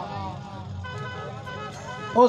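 Faint background voices over a low steady hum, in a pause between loud lines of recited poetry on a microphone.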